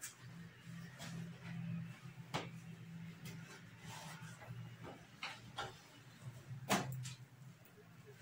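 Quiet handling of a cotton tunic on a dress form: fabric rustling and a few light clicks and taps, the sharpest about two-thirds of the way in, over a low steady hum.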